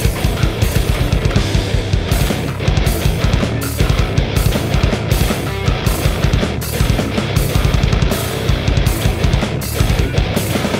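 Heavy metal instrumental passage: a drum kit with bass drum and an electric bass guitar played fast.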